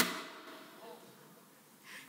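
A pause in a woman's speech through a microphone: her last word fades out at the start, then it is nearly quiet apart from a faint vocal sound about a second in and a soft breath in near the end, just before she speaks again.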